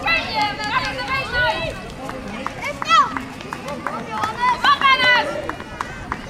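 High-pitched children's and onlookers' voices calling and shouting outdoors, in several separate shouts across the few seconds, the sharpest about three seconds in.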